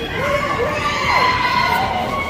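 Large audience cheering, with many voices shouting and whooping at once over a dense crowd noise, growing louder shortly after the start.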